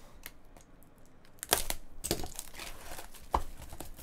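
Clear plastic shrink wrap crinkling and tearing as it is pulled off a sealed cardboard trading-card box, with a few sharp clicks from the box being handled. Quiet at first, it starts about a second and a half in.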